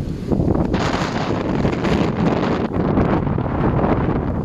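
Strong storm wind buffeting the microphone, a loud, steady rush of noise that gets stronger about half a second in.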